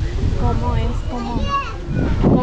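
People talking in high-pitched voices, heard throughout.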